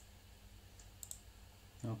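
Faint computer mouse clicks, a few short ticks about a second in, as an on-screen button is clicked.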